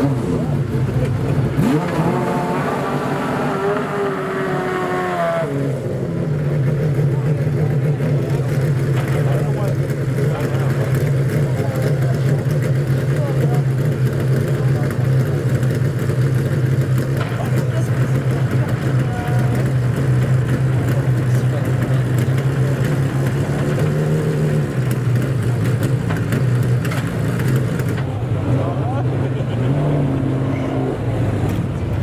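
Pagani Zonda R's V12 engine: it revs up for a few seconds near the start, falls back at about five seconds, then idles steadily.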